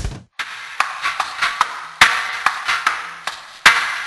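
Loud rock music cuts off abruptly, then a sparse logo sting of sharp tapping and knocking percussive hits follows, with louder hits about halfway through and again near the end.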